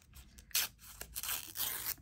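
Washi tape being torn by hand, two papery rips: a short one about half a second in and a longer one near the end.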